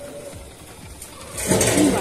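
Small motorcycle engine running as the bike rides past, with a sudden louder rush of noise about one and a half seconds in.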